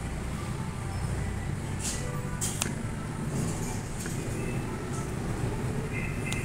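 Kitchen scissors snipping through crispy fried pork skin on a wooden cutting board: a few short crisp cuts about two seconds in and again half a second later, over a steady low hum.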